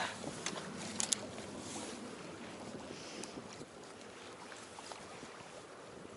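Steady hiss of wind and water around a small fishing boat on open water, with a couple of sharp light clicks about a second in.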